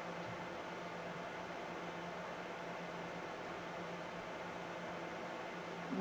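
Room tone: a steady, even hiss with a faint constant low hum and no distinct events.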